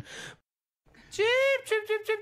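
A brief silence, then a high-pitched voice-like sound that rises and falls once, followed by quick repeated short notes on one steady pitch, about six a second.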